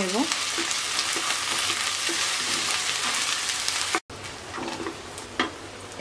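Small prawns and sliced onions sizzling in hot oil in a pan, stirred with a wooden spatula. The sizzle drops off suddenly about four seconds in and carries on quieter.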